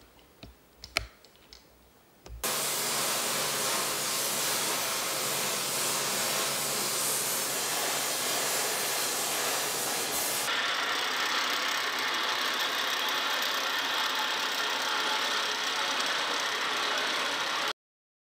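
Oxy-fuel gas torch flame hissing steadily. It starts abruptly a couple of seconds in, changes in tone about ten seconds in and cuts off suddenly just before the end. A single click comes before it, about a second in.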